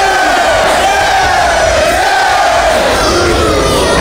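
Wrestling crowd yelling as two wrestlers trade forearm strikes, carried by one long, wavering, drawn-out yell that fades out near the end.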